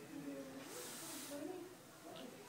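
Air hissing through a full-face breathing mask, swelling and fading with each breath about every second and a half. A faint murmuring voice runs underneath.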